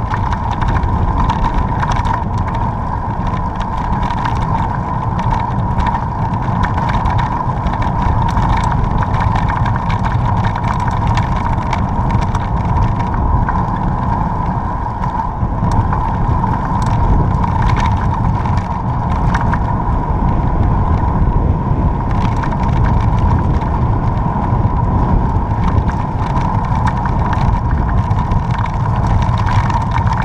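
Steady wind rumble on the microphone and tyre noise of a slow road ride along asphalt, with a constant mid-pitched hum and small ticks and rattles throughout.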